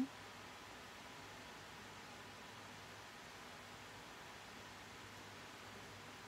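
Faint steady hiss of an electric fan running, with a faint low hum underneath.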